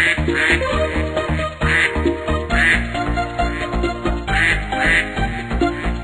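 Bouncy children's backing music with a steady beat, with cartoon duck quacks dropped in every second or so, often two at a time.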